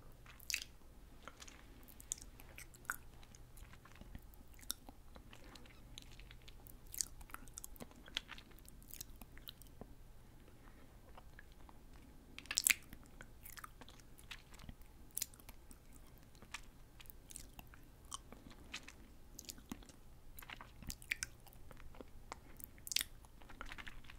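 Close-miked mouth sounds of fruit jelly candy being chewed with closed lips: soft, wet clicks and lip smacks at irregular intervals, one louder smack about halfway through.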